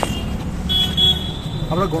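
A short high-pitched steady tone, about half a second long, sounds about three-quarters of a second in over a continuous low rumble of the kind road traffic makes; a man's speech starts again near the end.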